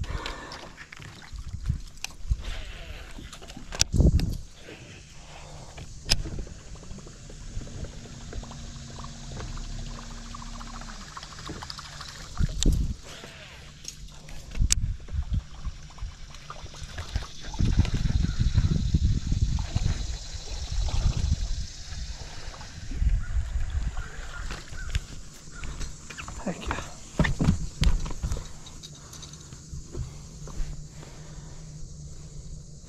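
Baitcasting rod and reel being handled and wound while fishing from a boat: scattered sharp knocks and clicks, a faint high hiss through the middle, and irregular low rumbles in the second half.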